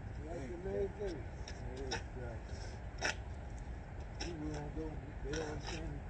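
Indistinct talking from a few people over a steady low outdoor rumble, with a handful of short sharp clicks.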